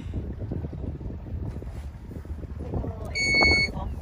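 Low steady rumble of a pontoon boat's outboard motor, with wind on the microphone. A little after three seconds in comes one loud electronic beep, about half a second long.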